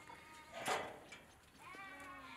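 Livestock bleating: a faint call at the start and a wavering, pitched bleat that begins near the end. A short knock comes about two-thirds of a second in.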